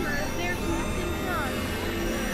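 Experimental electronic drone music: layered synthesizer tones over a low rumble, with several pitches sliding up and down.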